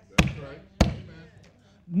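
Two loud, sharp hand slaps about half a second apart, each with a short ringing tail.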